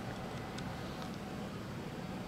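Steady background noise of an exhibition hall, an even hum and hiss with no distinct event.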